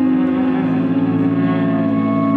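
Live amplified violin drone: a dense, loud layer of steady held tones with no breaks. The lowest notes shift slightly about half a second in.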